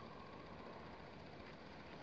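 Near silence: faint, steady room tone with no distinct events.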